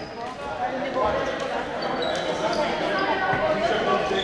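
Young female handball players calling out on court over a handball bouncing on the wooden hall floor, with a few short high squeaks scattered through.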